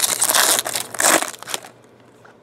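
Foil wrapper of a Topps Chrome football card pack being torn open and crinkled by hand: a dense crackle that peaks twice and stops about a second and a half in.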